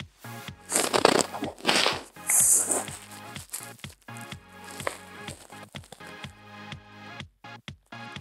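Background electronic music, with three loud crunchy rustles in the first three seconds as beaded foam clay is pressed and shaped by hand on paper.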